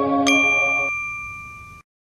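Station-ident chime: a single bright bell-like ding strikes about a quarter second in and rings on, fading, over the end of a soft ambient music pad. The sound cuts off abruptly near the end.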